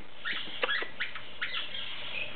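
Goldie's lorikeet making a quick run of five or six short, high chirps and clicks.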